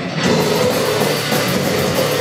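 A metal band playing loud and live: distorted electric guitar and bass over a drum kit, heard from the audience. The high end drops away for a moment at the very start, then the full band comes back in.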